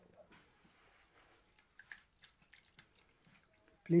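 Mostly near silence with a few faint, scattered soft ticks from moist crumbly feed being handled and placed in a plastic bowl.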